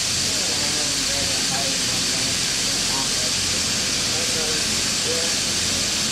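Steady, unbroken hiss of shearing-shed machinery running: electric shearing handpieces at work on Angora goats and a large fan blowing. Faint voices can be heard under it.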